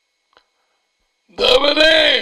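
Near silence, then about one and a half seconds in a loud, drawn-out vocal sound from a person's voice begins, its pitch bending and dipping near the end.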